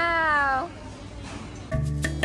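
A drawn-out, high-pitched spoken "wow" that falls slightly in pitch and stops under a second in. After a short quiet gap, background music starts near the end.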